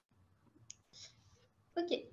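A quiet pause with a faint click and a short faint hiss, then a woman starts speaking near the end.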